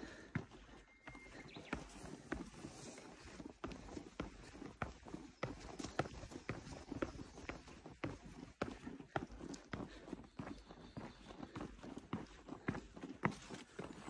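Footsteps knocking on the wooden planks of a boardwalk trail, a brisk, uneven run of hollow knocks.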